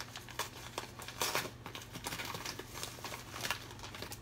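Packaging crinkling and tearing as a mail package is opened by hand: irregular rustles and crackles, busiest about a second in.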